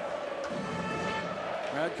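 Ice hockey arena broadcast sound: crowd noise under steady held tones, with a play-by-play commentator starting to speak near the end.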